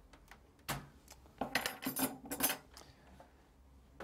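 Thin metal expansion-slot covers being pulled out of a Macintosh IIx case and handled: a few light metallic clinks and rattles, one about two-thirds of a second in and a busier run from about one and a half to two and a half seconds.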